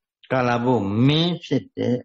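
Speech only: a monk preaching in Burmese, starting a moment in after a short pause.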